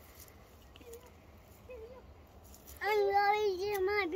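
A young child's voice singing a long held, wavering note without words, starting about three seconds in after near-quiet outdoor background.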